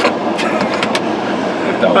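Steady rush of air from a car's ventilation fan inside the closed cabin, with a few light clicks in the first second.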